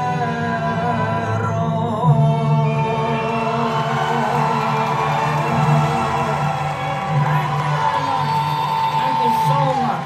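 An operatic aria sung by a ventriloquist in her puppet's voice over a recorded backing track. Near the end one long high note is held, then slides down and breaks off.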